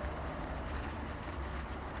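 Quiet, steady room tone with a low hum; no distinct sound stands out.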